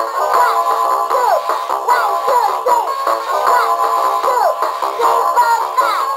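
Sporting Kitty talking alarm clock sounding its alarm: tinny electronic aerobic music from its small speaker, a short phrase of falling notes repeating about once a second, with a synthesized female voice counting along.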